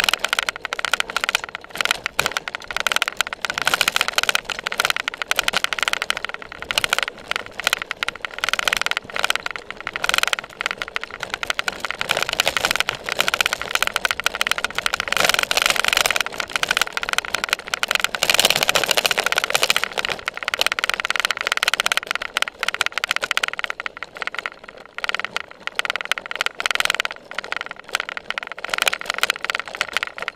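Cyclocross bike ridden fast over bumpy grass, heard from a seat-mounted camera: constant rapid rattling and knocking from the bike and camera mount, with tyre and wind noise and a steady high tone underneath.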